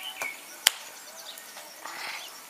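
Larch-wood fire burning in a grill, with a faint crackle, a small click near the start and one sharp pop about a third of the way in.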